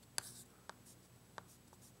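Chalk writing on a blackboard, faint overall, with three short, sharp chalk taps as figures are written.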